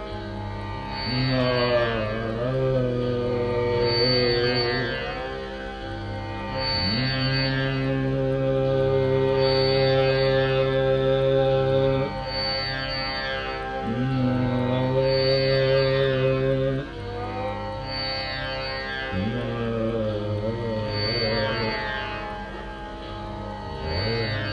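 Dhrupad alap in raga Adana: a male voice holds long notes and slides slowly into each new pitch, with no drum. Under it, a tanpura drone is plucked in a cycle that repeats about every two seconds.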